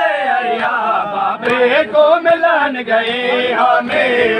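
A crowd of men's voices chanting a Punjabi noha, a mourning lament, together, with scattered sharp slaps of hands beating bare chests in matam.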